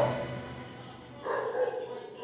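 Music fades out, then a dog makes short calls, one about a second in and another near the end.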